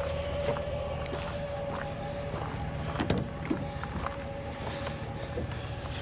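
Pickup truck idling: a steady low hum with one constant pitched tone over it, and a few light clicks and knocks, the clearest about three seconds in.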